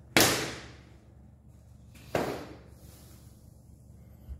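Two sharp impacts from the moves of a martial arts form, about two seconds apart, the first louder; each rings out briefly in the room.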